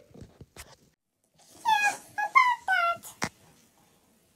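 A high-pitched, squeaky cartoon character voice making a short run of wordless animal-like sounds about halfway through, followed by a single sharp click.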